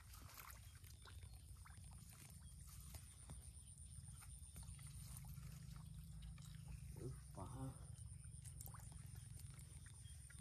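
Very faint small ticks and wet mud sounds as hands dig through shallow mud in a drained pool to catch fish, over a steady low rumble. A short voice-like grunt or call sounds about seven seconds in.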